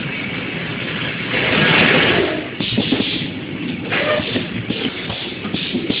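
Automatic four-nozzle liquid soap filling machine running: a steady mechanical din broken by short rushing bursts every second or so. The loudest burst comes about a second and a half in.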